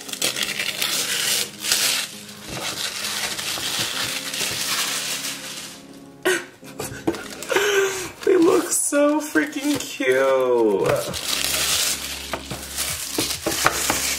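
Thin paper wrapping being torn and crinkled off cardboard boxes, with much rustling and crackling. In the middle stretch a voice makes wordless sounds over the handling.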